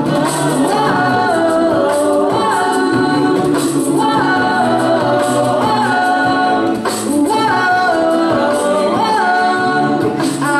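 A mixed a cappella vocal group of male and female voices singing in harmony through microphones, with a steady beat of vocal percussion (beatboxing) under the sung parts.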